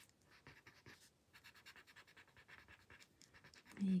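Paper tortillon (blending stump) rubbing graphite on a paper tile in quick short strokes: a faint, rapid scratching, with a brief pause a little after the first second, as the pencil shading is softened.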